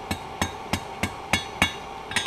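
Hand hammer striking the hot end of a steel file on an anvil: six strikes, about three a second, each with a short metallic ring. The blows are drawing the file's end out into a fish hook.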